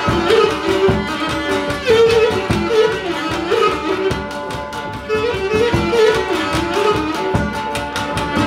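Cretan lyra playing an ornamented syrtos melody, with a laouto strumming accompaniment and a two-headed drum keeping a steady dance beat. Instrumental, no singing.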